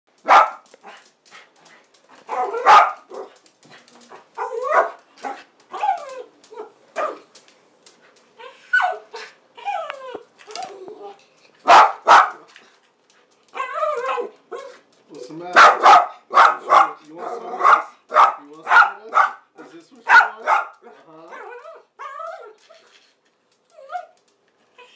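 Small dog begging for food, barking sharply in bursts between whining, howl-like calls that bend up and down in pitch. The calls run on and off throughout, busiest in the second half.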